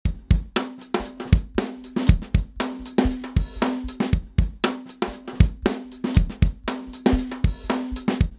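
A drum-kit loop (kick, snare and hi-hat) playing back at a steady beat from a digital audio workstation. The track is set to a −6 dB pan law with gain compensation, so the sides are boosted by 6 dB rather than the centre being lowered.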